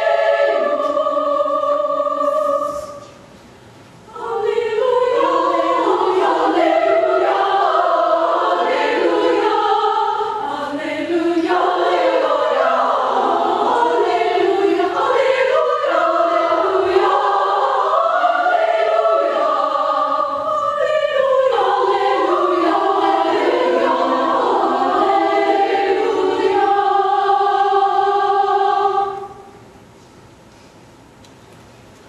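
A women's choir singing a Latin sacred piece. The voices break off briefly about three seconds in, then come back in and sing on, closing on a held chord that stops about a second before the end.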